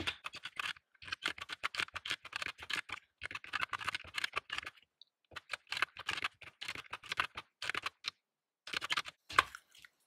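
Keys of a wood-finish desktop calculator being tapped in quick runs of clicks while a column of figures is added up, with brief pauses about halfway through and again near the end.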